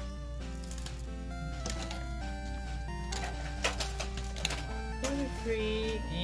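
Background music of held notes changing step by step, with light clicks of trading cards being flipped through by hand.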